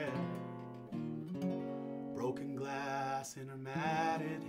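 Acoustic guitar playing slow ringing chords in a ballad, changing chord about a second in and again near the end.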